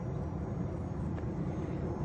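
Distant steady drone of a small RC airplane's brushless electric motor (BE1806 2300KV) and 6x4 propeller in flight, heard under low rumbling outdoor noise.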